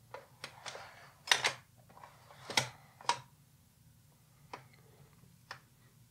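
Soft, irregular clicks and taps from handling 35mm slides while changing to the next slide: about seven sharp clicks, two of them louder, a little over a second in and about two and a half seconds in.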